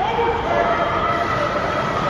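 Voices shouting and held for a second or so over the noisy background of an ice rink during play.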